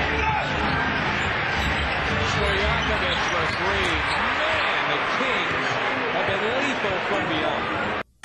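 Steady arena crowd noise during a live basketball game, with the ball bouncing on the court and scattered voices calling out, rising and falling in pitch through the middle.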